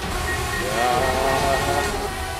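DJI Mavic Air 2's motors and propellers running: a steady whirring hiss carrying a whine whose pitch wavers up and down.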